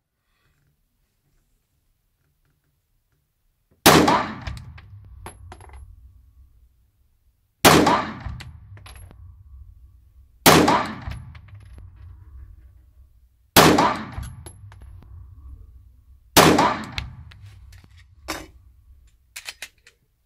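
Five shots from a Glock pistol about three seconds apart, each echoing and fading slowly in the indoor range. Lighter clinks of ejected brass casings landing follow the shots.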